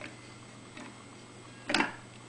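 Hand handling a 45 rpm vinyl record on a turntable: a few faint clicks, then one short knock near the end, over a steady low hum.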